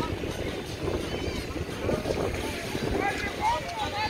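Beach ambience: distant voices of children and other people calling out over a steady rush of wind on the microphone and surf.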